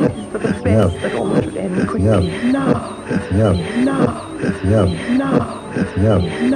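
Experimental electronic tape music built on a looped, treated vocal fragment ('no… now'). It repeats over and over, a little more than once a second, each repeat arching up and down in pitch with a growling edge.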